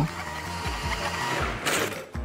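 Automatic sensor paper towel dispenser's motor running as it feeds out a towel, with a short sharp rustle near the end.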